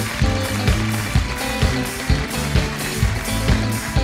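A live band playing an upbeat tune: bass guitar and drums, with a steady kick-drum beat about two strikes a second.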